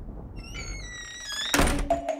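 Intro sound effects: a low rumble dies away, then a cluster of pitched tones sweeps upward and ends in a loud hit about one and a half seconds in, with music notes starting right after.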